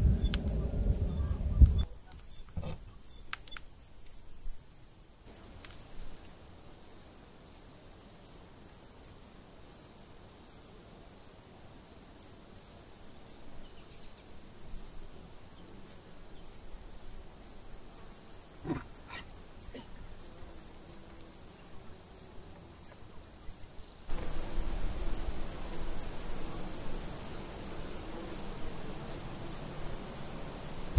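Crickets chirping in a steady, evenly repeating pulse, over a constant high insect drone. A loud low rumble of handling noise fills the first two seconds, and a faint click comes a little past halfway.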